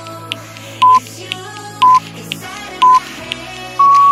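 Workout interval-timer countdown beeps: a short beep once a second, three times, then a longer, slightly higher beep starting near the end that marks the end of the rest and the start of the next work interval. Upbeat pop music plays underneath.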